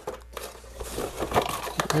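Plastic packaging crinkling and rustling as it is handled, with many small clicks, getting louder from about half a second in.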